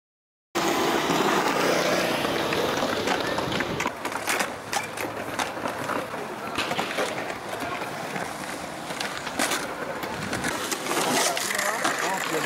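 Skateboard wheels rolling on concrete, with sharp clacks of the board hitting the concrete scattered through the second half, and voices in the background.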